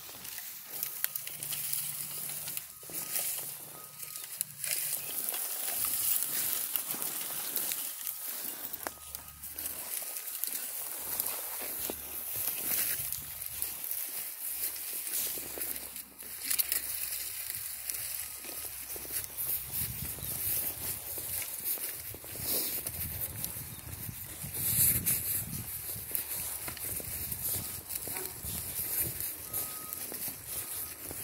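Footsteps crunching and rustling through dry leaves and grass, uneven and irregular.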